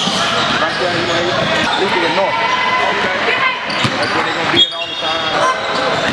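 Basketballs bouncing on a hardwood gym floor amid the echoing chatter of players and onlookers in a large gym. About four and a half seconds in comes a sharp thump, then a brief high steady tone.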